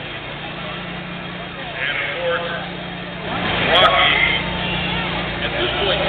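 A car engine idling steadily with a low hum, under indistinct voices that come and go.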